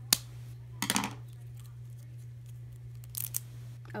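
Scissors snipping at the packaging of small toy fences: one sharp snip just after the start, a quick run of snips about a second in, and another short one near three seconds in, over a steady low hum.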